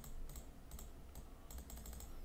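Faint computer mouse clicks, about four a second, as numbers are entered one button at a time on an on-screen calculator.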